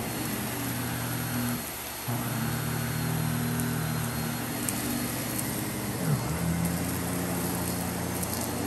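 Miele canister vacuum cleaner running with an electric powerbrush head on carpet: a steady suction rush with a low motor hum. The hum drops out briefly about two seconds in, then dips in pitch and comes back up a little after six seconds.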